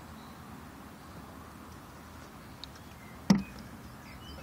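Faint steady background noise, broken about three seconds in by one sharp knock.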